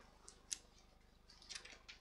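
Near silence broken by one faint, sharp click about a quarter of the way in and faint rustling near the end: small handling noises as eyeglasses are put on.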